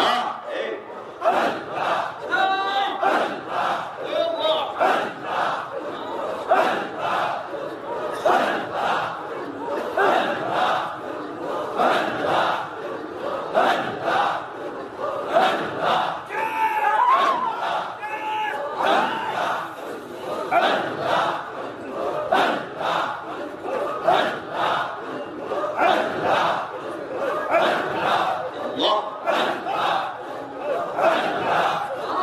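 Loud congregational Sufi zikr: a man chants forcefully into a microphone in a fast, even rhythm, amplified over a PA, with a crowd of men chanting along.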